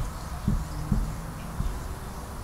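A marker writing on a whiteboard: a few soft, low knocks as the strokes press against the board, over a faint hiss.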